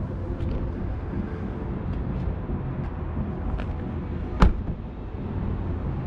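Steady low rumble of car-park traffic, and one sharp thud about four and a half seconds in: a car door being shut.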